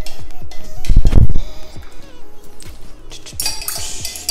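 A spoon clinking against a glass measuring jug of melted cocoa butter as the jug is handled and stirred, with a dull knock about a second in, likely as the jug comes out of the double-boiler pot. Background music plays throughout.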